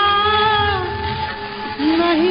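Khayal-style male singing from a 1930s 78 rpm shellac record: a held, wavering sung note that fades out just before halfway, over steady accompanying drone tones, with the next phrase starting near the end. The sound is narrow and dull, with no high treble, as is typical of an old disc transfer.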